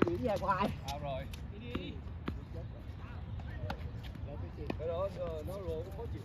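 Tennis rally on a hard court: about five sharp pops of a tennis ball struck by rackets and bouncing, at irregular intervals, with players' voices calling out near the start and again near the end.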